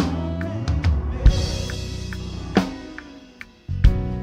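Live drum kit played with band accompaniment: heavy kick-and-cymbal hits about every second and a quarter over held bass and keyboard notes. The band drops nearly silent for a moment near the end, then a hard drum hit brings it back in.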